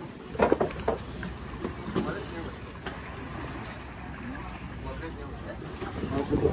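Indistinct voices, loudest about half a second to a second in, over a steady low background rumble.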